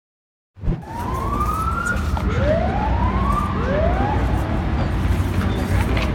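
Steady low street rumble, opening with a brief knock, over which a thin tone rises in pitch three times in quick succession, the first longest and the last shortest.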